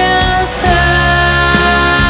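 Progressive rock band playing an instrumental passage: a lead line of long held notes that slide in pitch, over sustained backing. About half a second in the music briefly drops, then a new held note comes in, with another quick slide near the end.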